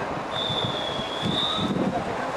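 Referee's whistle blown in one long, steady, high blast of over a second, the signal for swimmers to step up onto the starting blocks, over a murmur of distant voices.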